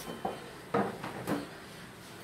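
Three short pops, each with a brief pitched ring, about half a second apart, from the sound effects of a TV channel's animated programme-schedule graphic.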